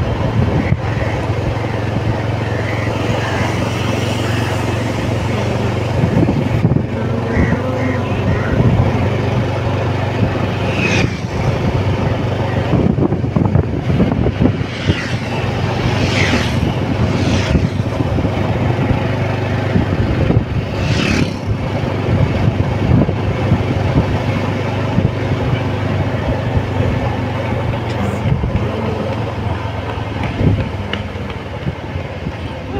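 Steady low drone of a road vehicle's engine with road noise, heard from on board while it drives, with a few brief higher-pitched sounds about a third, half and two-thirds of the way through.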